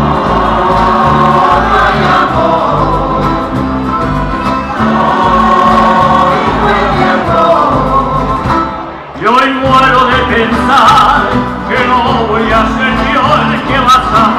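A Canarian folk parranda playing live: accordion, electric bass and plucked strings under several singers. The music dips briefly about nine seconds in, then comes back in full with the singing.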